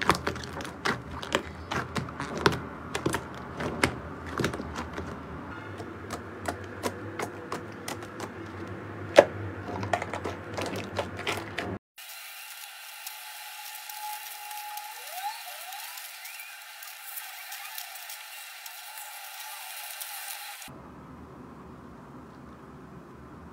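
Black slime being kneaded and pressed by hand in a glass bowl, giving many sharp wet clicks and pops. About halfway through it cuts to softer, steadier squishing of clear jelly balls with yellow centres being handled, and near the end to a quieter squeeze of a pile of the balls.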